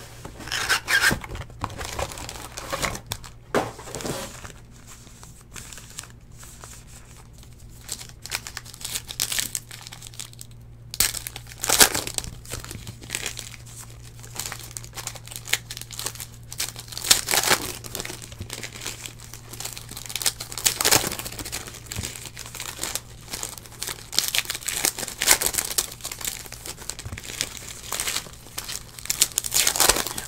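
Foil trading-card packs (2017 Donruss Elite Football) crinkled and torn open by hand: irregular rustling with several louder, sharp rips.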